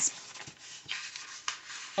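Paper sticker sheets rustling and sliding under hands on a planner page, with a few faint ticks.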